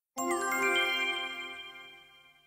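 A short chime sound effect: bell-like notes ringing together, with a few higher ones coming in one after another, then fading away over about two seconds.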